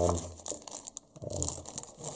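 Small plastic parts bag of screws crinkling as it is picked up and handled, with irregular crackles.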